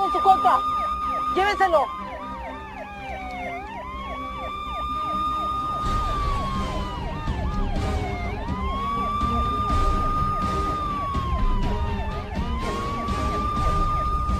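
Police car siren wailing, a slow rise to a held high tone and a long slide down, repeating about every four seconds, with a fast yelping warble over it. A low rumble joins about six seconds in.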